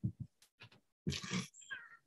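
Brief, faint human vocal sounds, chuckles and murmurs, a few short bursts with gaps of near quiet between them.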